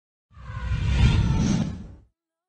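Intro whoosh sound effect with a deep rumble underneath. It swells in shortly after the start, peaks about a second in, and fades away near the end.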